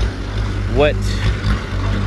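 Engine of a small truck-mounted forklift running with a steady low drone as the machine drives off.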